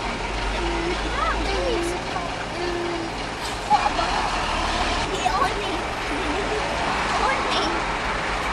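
Steady low engine and road rumble inside a car moving slowly in a traffic jam, with indistinct voices in the background and a short knock a little over halfway through.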